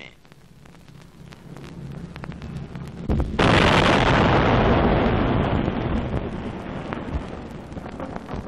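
A low rumble builds for about three seconds, then a single loud explosion goes off and its roar dies away slowly over several seconds, on an old optical film soundtrack.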